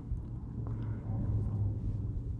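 A low steady rumble, with faint rustling of fabric being handled and a faint click just under a second in.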